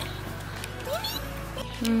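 A cat meows once, a short rising call about a second in, over background music.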